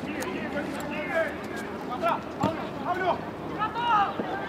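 Scattered short, indistinct shouts and calls from people on and around a football pitch during play, over steady open-air background noise.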